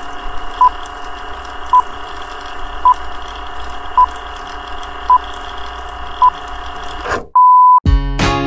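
Film-leader countdown sound effect: six short, even beeps about once a second over a steady whirring hum. Near the end the hum cuts out for a moment and one longer beep sounds.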